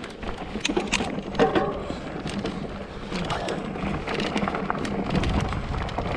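Ibis Ripley 29er mountain bike rolling over a loose, rocky dirt trail: a steady crunch of tyres on gravel with many sharp clicks and rattles, over a low rumble of wind on the microphone.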